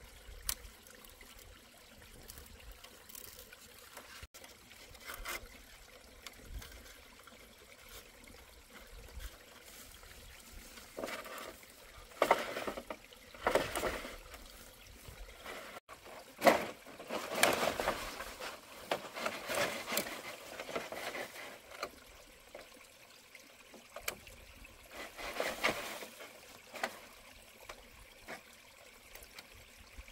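Irregular rustling and scraping of thin bamboo strips being pulled and wrapped around a bundle of bamboo poles, with a few sharp clicks of bamboo knocking. It is busiest in the middle stretch.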